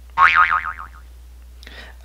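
Cartoon 'boing' sound effect: a single pitched tone that wobbles rapidly up and down and dies away within about a second.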